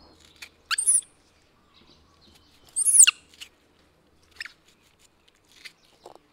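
Baby monkey giving two loud, high squeaky calls, the second a longer call that falls in pitch, then two fainter short calls near the end, as it reaches to beg for food.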